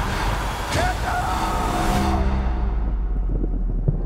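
Film trailer soundtrack: music over a deep, steady drone, mixed with a dense rushing noise and a few sharp hits that fade out about two seconds in.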